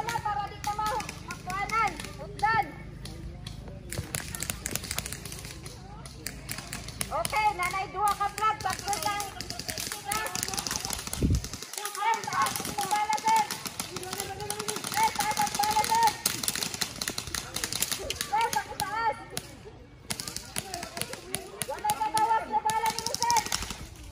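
Airsoft guns firing in rapid strings of sharp clicks, with players' voices calling out over them.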